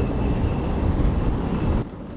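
Steady street noise with a low rumble, cutting off abruptly near the end.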